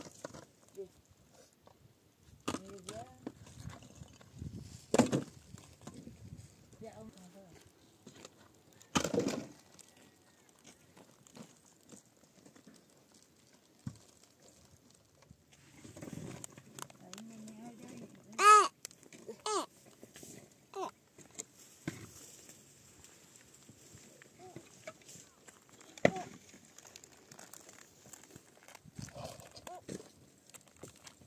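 Scattered knocks and clatters of broken blocks and timber being handled while rubble is cleared. About halfway through, a brief high-pitched vocal sound stands out above the knocks.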